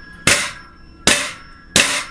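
A pogo stick bounced by hand off the floor without a rider, its foot striking the floor three times, about once every two-thirds of a second. Each strike is a sharp knock followed by a brief metallic ring from the spring and frame.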